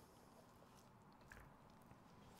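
Near silence, with faint wet squishing of sticky sourdough dough being stretched and folded by hand in a glass bowl, and a small tick about a second and a half in.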